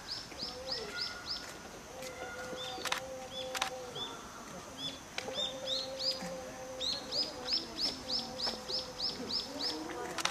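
A songbird singing quick runs of short, repeated chirps, about five notes a second, pausing between runs. A faint steady hum runs underneath, with two sharp clicks about three seconds in.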